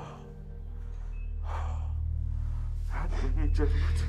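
A woman's emotional gasp about a second and a half in, then broken, tearful speech near the end, over a low, sustained music score that swells gradually.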